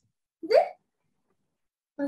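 A single short vocal sound from a person, rising in pitch and lasting about a third of a second, about half a second in; the rest is silent.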